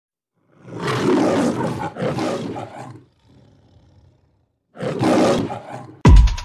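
An animal roar, heard twice: one long, rough roar through the first half and a shorter one near the end.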